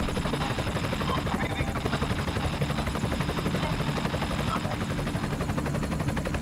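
Helicopter rotor chop: a steady, rapid pulsing at an even level.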